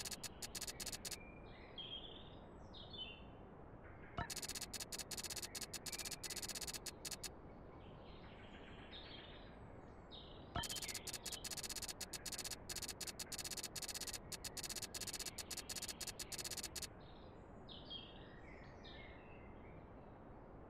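Rapid text-scroll blip sound effect, a fast run of clicks each time a dialogue line types out, in three bursts, with a sharp click opening the second and third bursts. Faint bird chirps in the background in the pauses between bursts.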